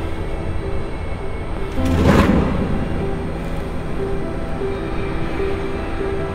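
Dark, sustained film-score music. About two seconds in, a flip-top lighter is struck and lit, a brief sharp burst over the music.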